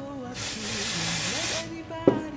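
One spray from an aerosol can of dry shampoo: a steady hiss lasting about a second and a quarter, starting about a third of a second in.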